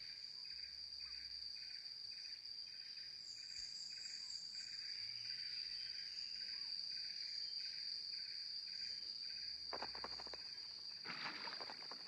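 Jungle insect chorus: a steady high-pitched trill with a slower chirping that pulses about three times a second. Two brief rustling sounds come near the end.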